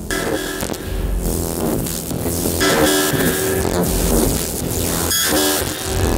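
Electronic sound-art installation output: layered synthesized tones and drones, made with Renoise and the MicroTonic drum synth, changing in pitch and texture every second or so as a hand passes over the piece's light sensors.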